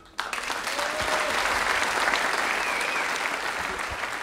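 Concert audience applauding at the end of the piece, breaking out suddenly just after the start and holding steady.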